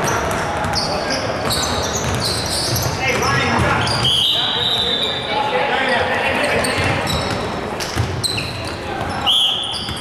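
Basketball game on a hardwood gym floor: sneakers squeaking in short high chirps, the ball bouncing on the court, and players' voices echoing in the large hall.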